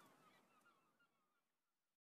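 Near silence: faint, short chirping calls that slide in pitch and fade away, then the sound cuts off near the end.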